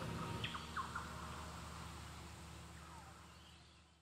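A few short bird chirps, with a faint falling call later, over a faint hiss of bush ambience that fades out.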